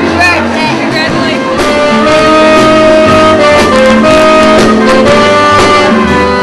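Dance band playing, with trumpet and saxophone holding long notes over bass and a steady drum beat. A voice is heard briefly at the start.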